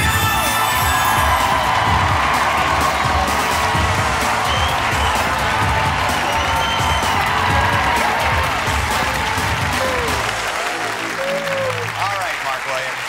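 Studio audience applauding and cheering over game-show music with a steady beat, with a few whoops rising out of the crowd.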